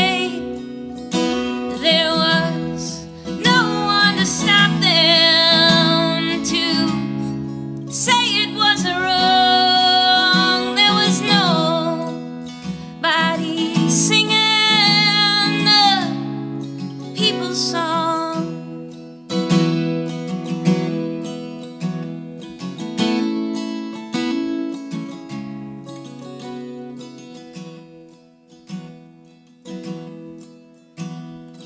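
A woman singing a folk song over strummed acoustic guitar with a capo. Past the halfway point the voice drops out and the guitar goes on alone, softening near the end.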